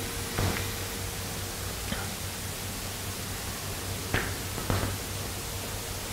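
Steady hiss of the room and sound system with a low hum, broken by a few faint clicks.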